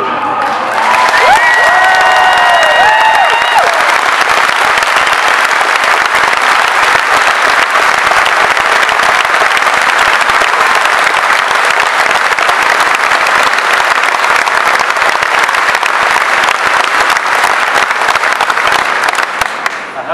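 A large audience applauding steadily in a big hall. The clapping swells in within the first second, and a few voices whoop and cheer over it in the first few seconds.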